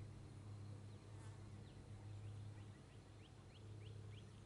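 Faint outdoor ambience, close to silence: a steady low hum under a series of short, faint rising chirps that begin about a second in and come a few times a second.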